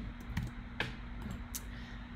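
A few scattered taps on a computer keyboard while navigating a web page, sharp separate clicks spread through the two seconds.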